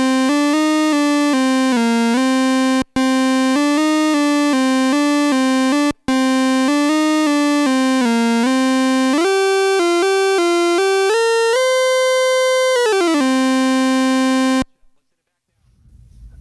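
Stylophone played with its stylus through a tube preamp turned up to maximum gain: a single-note melody moving in steps, broken off briefly twice. A held high note slides down in pitch about three-quarters of the way through, and the playing stops shortly before the end.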